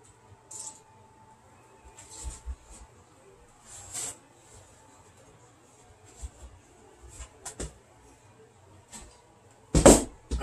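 Faint scattered handling noises with a few light clicks and knocks, then near the end one loud knock as a plastic milk crate topped with a wooden board is set down on the workbench.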